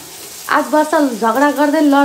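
Food frying and sizzling in a wok on a gas burner, stirred with a spatula, under a louder sung melody that comes in about half a second in with long, wavering held notes.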